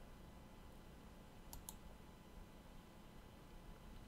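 Near silence with room tone, broken by two faint computer mouse clicks in quick succession about a second and a half in.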